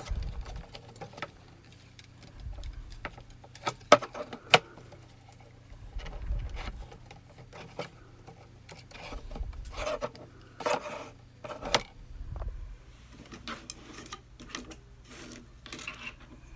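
Handling noise of baling wire and a cardboard picture box on a table: scattered light clicks, scrapes and rustles as the wire is worked by hand. Two sharper clicks come about four seconds in, and dull low bumps every few seconds.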